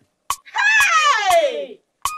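A woman's loud, wavering scream, starting about half a second in and falling steadily in pitch for over a second, with a sharp click just before it.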